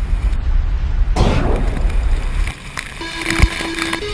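Wind and water buffeting the microphone of a camera carried by a water skier, a heavy low rumble with a louder surge of spray about a second in. The noise drops away after two and a half seconds and music starts near the end.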